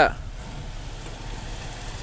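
Nissan Xterra's engine running steadily at low revs as the SUV creeps on a slick mud slope, heard from outside the vehicle as a low, even rumble under outdoor hiss.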